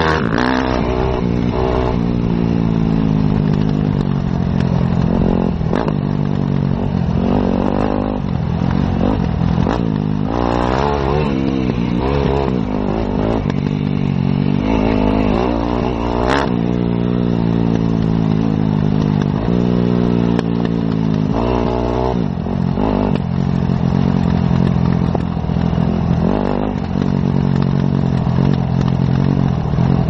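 Enduro dirt bike engine ridden off-road, its pitch repeatedly rising and falling as the throttle opens and closes and the gears change. The bike clatters over rough ground, with a sharp knock about 6 seconds in and another about 16 seconds in.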